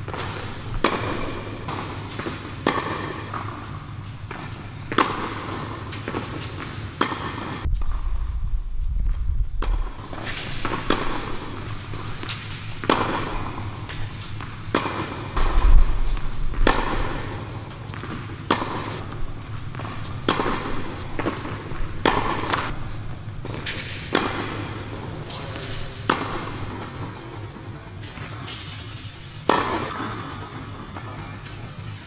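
Tennis ball struck by a racket and bouncing on an indoor court, a sharp pock every second or so with a short echo from the hall, over a steady low hum.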